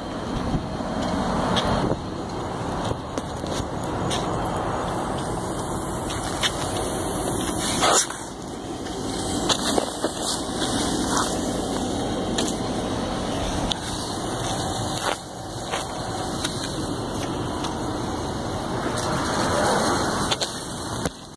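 Fire engine running steadily while it pumps water into charged fire hose. Scattered short knocks are heard over it.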